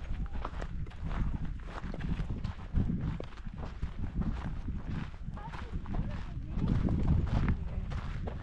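Footsteps crunching along a dirt and gravel path at a walking pace, over a steady low rumble of wind buffeting the action camera's microphone.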